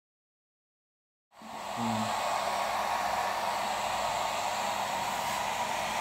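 Hair dryer blowing air, coming in about a second in and then running steadily.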